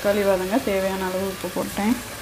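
Someone talking over the sizzle of onions and tomatoes frying in ghee and oil in a pressure cooker, stirred with a wooden spatula.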